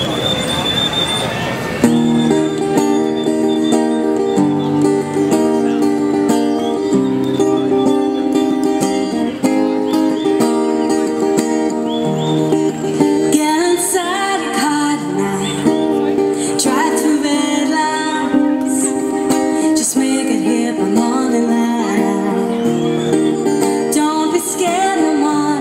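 Solo acoustic-electric guitar playing an instrumental intro of sustained chords that change every second or two, starting about two seconds in.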